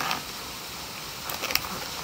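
A latex twisting balloon being handled and broken off by hand: faint rubbing of the latex and a few small snaps about one and a half seconds in.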